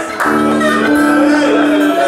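Live stage music: a sustained chord of two held low notes from an instrument, starting a moment in and holding steady until it breaks off at the end.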